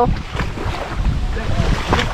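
Wind buffeting the microphone, mixed with water sloshing as people wade through shallow water.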